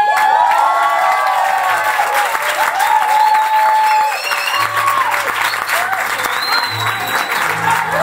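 Audience applauding and cheering at the end of a song, with shouts and whoops over the clapping, while an acoustic guitar plays softly underneath.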